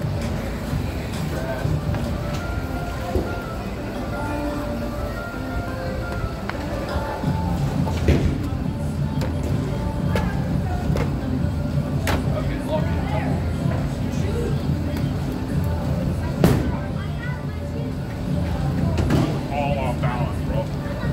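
Bowling alley ambience: background music and people's voices over a steady low rumble, with a few sharp knocks, the loudest about eight and sixteen seconds in.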